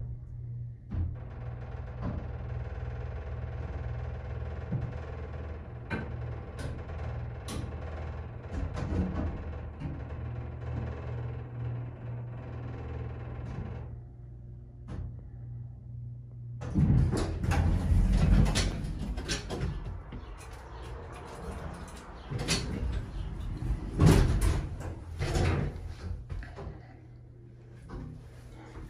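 Vintage Dover hydraulic elevator travelling up: a steady low hum from the hydraulic pump motor as the car rises, cutting off after about sixteen seconds when the car stops. Then the doors slide open with several clunks and knocks.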